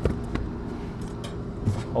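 Steady low machine hum from a rooftop packaged HVAC unit running, with a couple of light knocks on its sheet-metal cabinet in the first half second.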